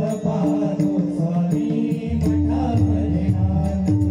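Marathi devotional bhajan: chant-like singing over held harmonium notes, with pakhawaj and tabla drumming. The deep drum bass thins out for the first couple of seconds, then comes back in.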